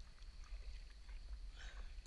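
Sea kayak paddling: small splashes and drips of water from the paddle blades, with one louder splash near the end, over a steady low rumble of wind on the microphone.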